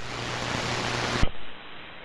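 Hiss of HF band noise from an AM ham radio receiver on dead air between two stations' transmissions, with a steady low hum under it. About a second in it cuts off suddenly and drops to a quieter, duller hiss.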